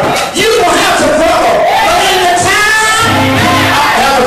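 A man singing into a microphone over live gospel band accompaniment of drums and electric bass guitar, with a low bass note held near the end, and congregation voices joining in.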